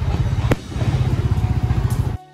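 Fireworks going off: a dense, rapid crackling rumble with one sharp bang about half a second in.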